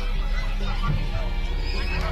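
Background music with a steady low drone, under people's high, excited shouts and cries rising and falling in pitch.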